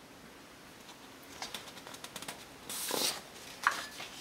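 Sheets of paper being handled and swapped: a few light ticks, then a short rustle about three seconds in.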